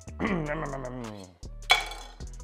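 A brief vocal noise, then a single sharp clink about three-quarters of the way through as a kitchen knife is set down on the wooden cutting board.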